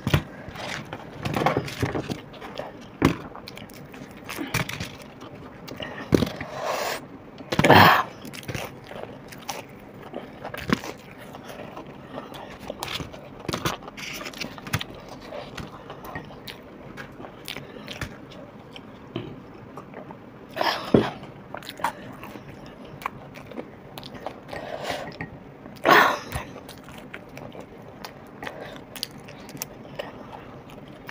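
Close-up biting and chewing of batter-fried chilli fritters (mirchi pakoda), a steady run of small crunches and mouth sounds, with a few louder bursts about 8, 21 and 26 seconds in.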